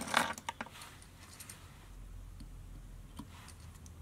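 Faint clicks and light handling noises from fly-tying tools being picked up and set down. A cluster of sharp clicks comes in the first half-second, then only scattered faint ticks over a low hum.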